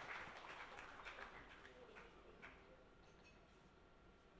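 Near silence: weak, scattered applause dying away, with a few faint separate claps in the first couple of seconds before it fades out.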